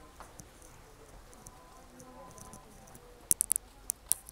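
Footsteps on stone paving: a quick run of sharp, hard clicks near the end, over faint background voices.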